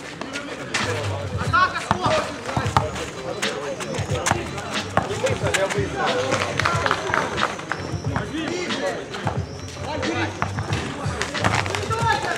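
A basketball bouncing on an asphalt court, with sneaker steps and irregular knocks throughout. Voices call out and music plays in the background.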